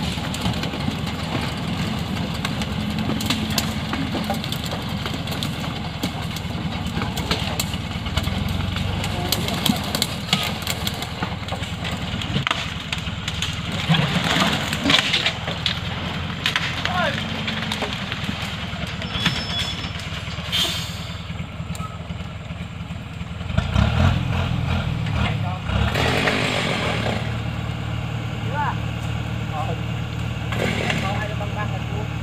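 A truck's engine running steadily at idle, its low note changing and growing stronger about two-thirds of the way through. Over it come scattered wooden knocks of acacia logs being stacked into the truck bed, and voices.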